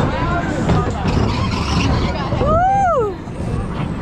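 Viper wooden roller coaster train rumbling along its wooden track, a steady heavy rumble that eases a little after about three seconds. About two and a half seconds in, a single high call rises and falls over the rumble.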